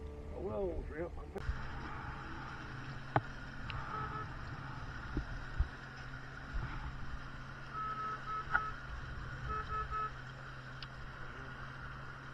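Small boat underway, its outboard motor running with a steady low hum under the rush of water and wind, starting about a second in. A few short beeps and the odd knock come through over it.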